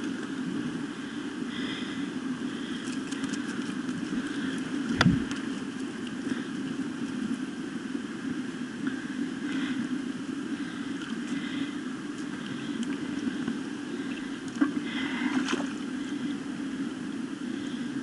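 Steady rush of a shallow, rocky mountain stream flowing over stones, with a single sharp knock about five seconds in and a few faint clicks.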